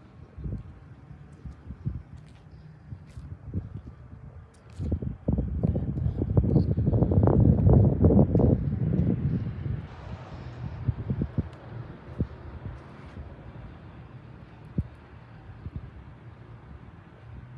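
Wind buffeting the microphone in uneven gusts, with a strong gust about five seconds in that dies back after about ten seconds.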